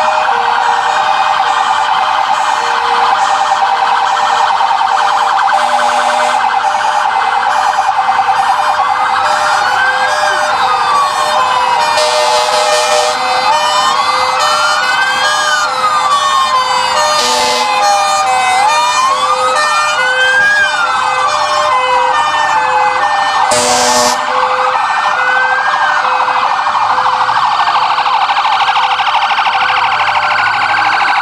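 Fire brigade vehicle sirens sounding together as the trucks pass: a rapid warbling siren runs throughout, and from about eight seconds in a second siren wails, rising and falling about every five seconds. A few short bursts of hiss cut in.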